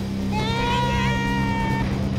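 A young boy screaming in a tantrum: one long, high-pitched scream held for about a second and a half.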